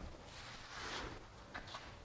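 Faint rustling and handling noise, with a few light clicks, as the man moves about fetching a different cutting tool.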